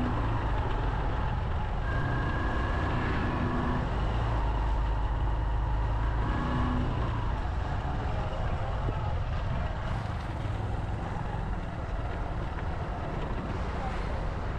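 Steady engine and road noise of a vehicle driving along a road, heaviest in the low end, easing slightly after about ten seconds.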